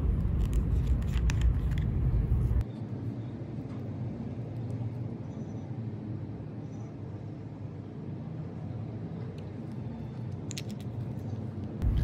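Steady low background rumble, dropping noticeably in level a little over two seconds in, with a few faint clicks from small plastic items being handled near the start and near the end.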